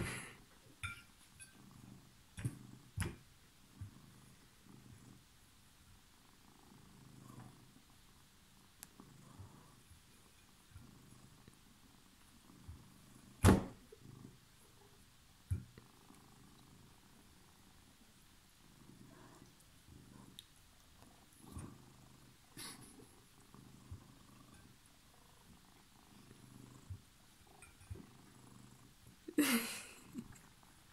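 Cat purring in a low, pulsing hum, with a few sharp knocks on the table, the loudest about halfway through.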